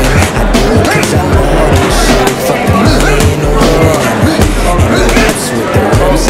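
Rapid, irregular punches from boxing gloves landing on a heavy punching bag, mixed with crowd chatter over a hip-hop backing track with a steady bass line.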